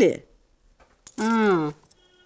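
Speech only: a woman's spoken line ends just after the start. After a short pause comes one brief drawn-out spoken word or murmur, falling in pitch.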